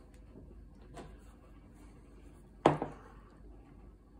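Kitchen utensils being handled at a stainless-steel pot: a faint knock about a second in, then one sharp clack with a short ring as the ladle is taken up and dipped into the pot.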